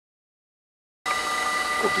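Dead silence for about a second, then railway-platform sound cuts in with a steady high whine, and a man's voice starts near the end.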